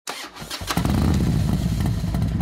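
Vespa 150cc scooter engine starting: a few short clicks, then it catches under a second in and runs steadily.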